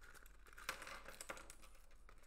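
Faint light clicks and taps of small phone parts and a tool being handled on a desk, the clearest two a little over half a second apart, over a low steady hum.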